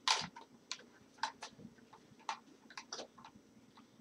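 About ten light, irregular clicks and ticks of small parts being handled, the first slightly louder than the rest.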